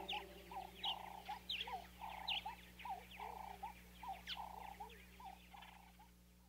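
Faint birds chirping: short calls repeated several times a second, some with quick hooked notes and higher chirps above them, stopping near the end.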